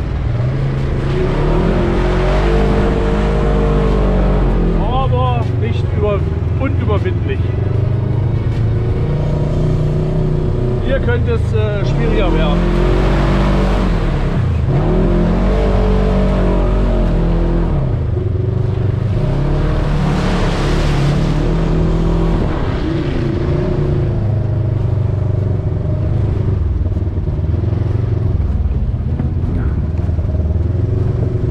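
Polaris RZR 1000 side-by-side's parallel-twin engine, heard from on board, revving up and down over and over as it drives a rough muddy track.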